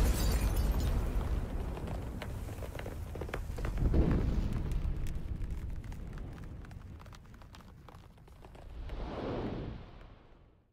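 Cinematic logo-intro sound effects: a deep boom with a long rumble and crackle, a second boom about four seconds in, and a swelling whoosh near the end that fades away.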